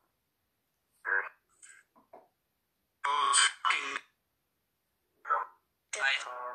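Short, choppy bursts of garbled voice-like sound from a ghost-box (necrophonic) phone app, each cut off into dead silence, the loudest pair about three seconds in. They are taken as a spirit voice (EVP) saying "God is".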